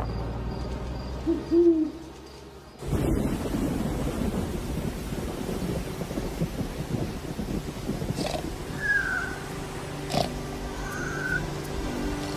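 An owl hoots once, loudly, about a second and a half in, over a low humming rumble that fades away. The sound then changes abruptly to a steady low rumbling noise, with a few short high chirps in the later part.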